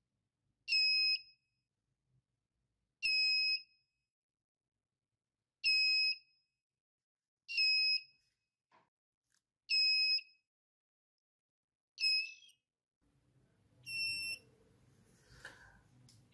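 Piezo buzzer added to a TP4056 lithium-ion charging module giving short, high-pitched beeps, seven of them about two seconds apart. It is the full-charge alarm: the cell has reached about 4.18 V and the module has begun to cut off the charging current.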